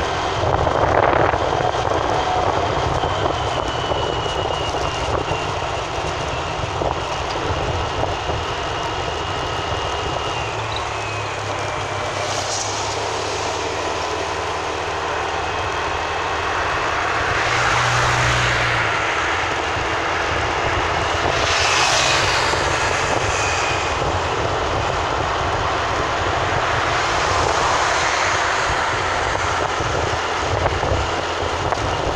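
Steady drone of a vehicle travelling along a road, engine and tyre noise, swelling louder several times.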